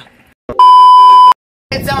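An edited-in bleep: a steady 1 kHz tone, very loud, held for a bit under a second and cutting off abruptly.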